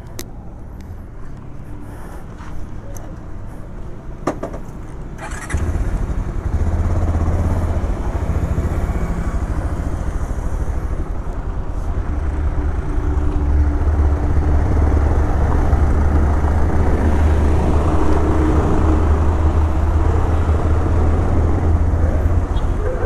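A motorcycle engine starts about five and a half seconds in, just after a couple of short clicks, then runs with a steady low rumble that grows a little louder later as the bike pulls away.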